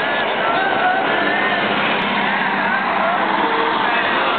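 Steady roadside noise with people's voices calling over it.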